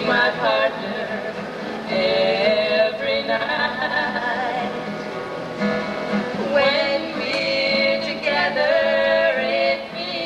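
Two women singing a song together into a microphone, holding long notes in phrases, over acoustic guitar accompaniment.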